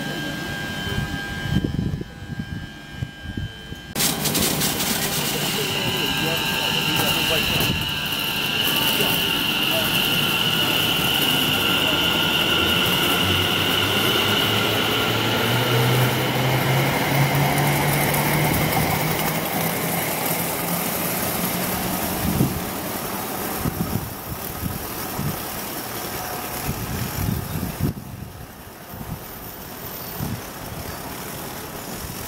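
Electric multiple-unit passenger train running past close by, with a steady high whine from its running gear. The low motor hum rises in pitch about halfway through as the train picks up speed. The sound fades near the end as the train clears.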